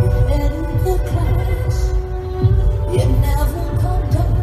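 Live rock band music recorded from the audience, dominated by heavy bass, with held sung or guitar notes above it.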